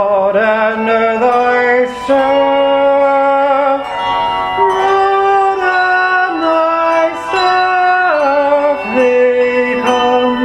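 A solo voice sings slow, sustained notes of a psalm setting, moving in steps with some vibrato and a downward slide near the end. A handbell choir accompanies it with struck, ringing notes.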